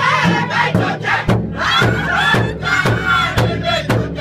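Powwow drum group singing a crow hop song: several men's high-pitched voices together over a large powwow drum struck in unison about twice a second.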